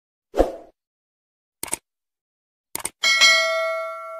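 Subscribe-button animation sound effects: a short pop, then two quick clicks about a second apart, then a bright bell ding about three seconds in that rings on and fades.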